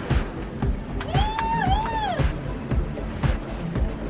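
Background music with a steady beat, and a melodic line that rises and falls about a second in.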